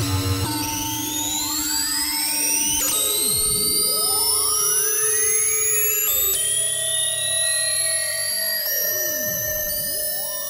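Eurorack modular synthesizer playing an FM patch: an E-RM Polygogo oscillator frequency-modulated by a WMD SSF Spectrum VCO, run through two Mutable Instruments Ripples filters. Held electronic tones are swept by crossing tones that glide up and down, with a new sweep starting about every three seconds.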